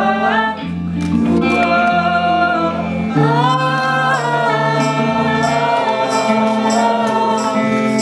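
A woman singing live with other voices joining in, over a sparse acoustic backing, as an encore song. The melody moves between notes early on, slides into a long held note about three seconds in, and sustains it to the end.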